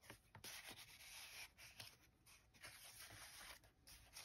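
Faint rubbing and rustling of paper and card as the pages of a handmade junk journal are handled and turned, in several short strokes with brief pauses between them.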